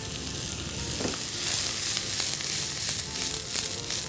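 Sliced vegetables stir-frying in a non-stick wok of very hot oil, the capsicum strips just added: a steady sizzle, strongest in the middle, with the light scrape of a spatula tossing them.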